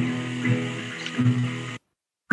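Acoustic guitar playing held chords in a devotional song, heard through video-call audio. The sound cuts out suddenly near the end, a dropout in the call audio.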